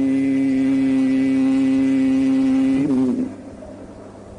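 Male Quran reciter's voice holding one long, steady note in melodic tajweed recitation, a drawn-out vowel that breaks off about three seconds in, leaving a low hum of the hall.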